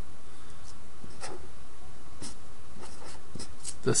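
Handwriting: a series of short, faint scratchy pen strokes, irregularly spaced, over a steady background hiss.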